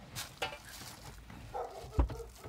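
A person climbing into a car through the open rear door: faint shuffling and clothing rustle, with a sharp knock near the end.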